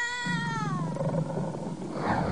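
Newborn baby crying: one high, wavering wail that falls in pitch and fades out about a second in, with a man's low emotional cry underneath.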